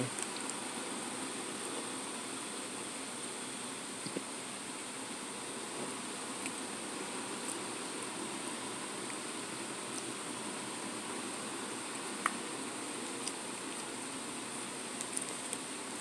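Steady background hiss from the room and microphone, with only a few faint clicks from quiet chewing of a soft donut.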